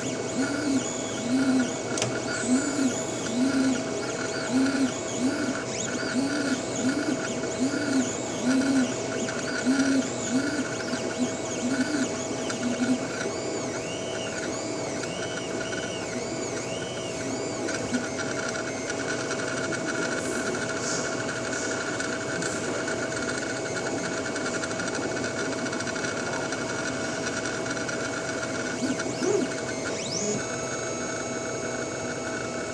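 3D food printer running, its stepper motors whining in short rising-and-falling sweeps, a little more than one a second, as the nozzle head moves back and forth laying paste, over a steady hum. After about twelve seconds the sweeps turn higher and sparser, and from about eighteen seconds the running is steadier.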